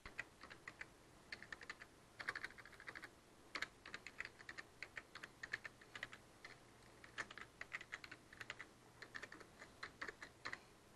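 Faint computer keyboard typing in irregular runs of quick keystrokes with short pauses, over a low steady hum.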